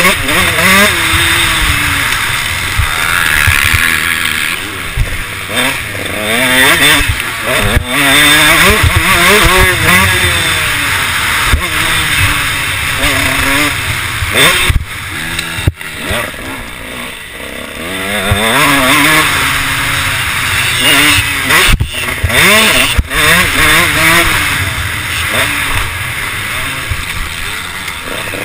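KTM 150 SX two-stroke single-cylinder motocross engine under hard riding, its pitch rising and falling again and again as the throttle is opened and shut through the track's turns and jumps, easing off for a couple of seconds past the middle.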